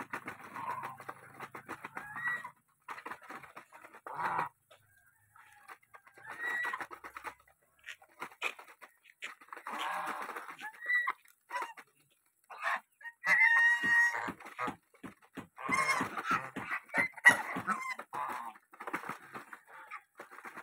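Domestic geese feeding together from a bowl of grain: bills clattering and dabbling in the feed in quick runs of clicks, mixed with a few short calls. The loudest call comes about two-thirds of the way through.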